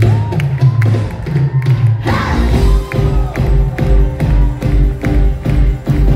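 Live pop-musical band playing from the stage, heard from the audience: electric bass and keyboards, with a steady low beat that comes in about two seconds in.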